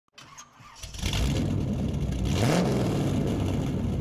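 A car engine starting and running with a brief rev about halfway through, used as a channel-intro sound effect.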